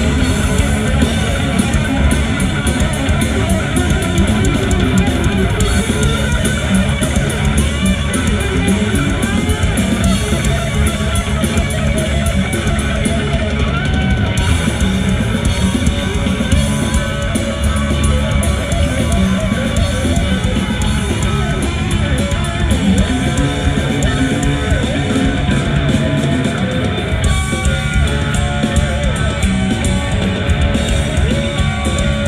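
Live heavy metal concert recording: distorted electric guitars with bass guitar and drum kit playing a loud, continuous passage with no singing picked out.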